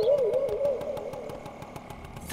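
A Bajaj scooter's two-stroke engine idling with a rapid, even putter. A wavering musical tone fades out over it in the first second, and the whole sound grows quieter.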